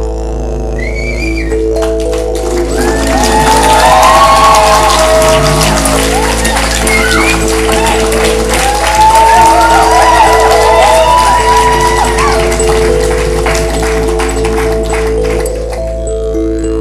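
Live intro music: a constant low drone under slowly changing held notes, with the audience cheering, whooping and clapping over it, loudest about four seconds in and again around nine to ten seconds.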